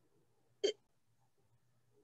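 A single very short vocal sound, a quick catch or syllable from a person's voice, about half a second in, over near silence with a faint low hum.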